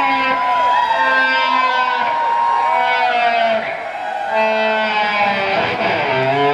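Stratocaster-style electric guitar playing a blues solo with string bends and held, wavering notes over a bass guitar. A new run of sustained notes begins about two-thirds of the way in.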